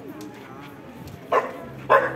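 A dog barks twice, about half a second apart, near the end, over a low murmur of crowd voices.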